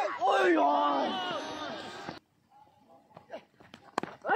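Men's voices shouting and calling out for about two seconds. The sound then cuts off abruptly to near quiet, with a few faint knocks.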